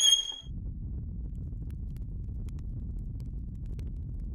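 A held high violin note cuts off about half a second in, leaving a steady low rumble with a few faint ticks.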